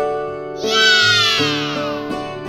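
Light children's background music of plucked, keyboard-like notes. About half a second in, a loud high sound effect slides down in pitch for just over a second.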